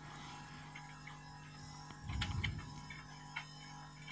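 Faint handling noise from a gloved hand moving a capacitor inside a floodlight's metal wiring box: a few light clicks and a short rustle about two seconds in, over a faint steady low hum.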